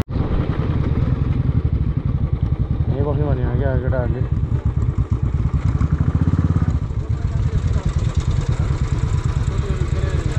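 Royal Enfield Classic 350's single-cylinder engine running steadily, a close, even low thump of firing pulses.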